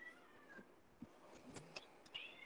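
Near silence: room tone with a faint high, slightly falling tone in the first half second and a few soft clicks.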